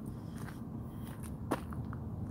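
Footsteps crunching on a gravel and dirt lot over a steady low rumble, with one sharp click about one and a half seconds in.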